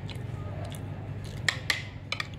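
Metal spoon and fork clicking and scraping against a ceramic plate while eating, a few light sharp clicks with the two loudest about one and a half seconds in.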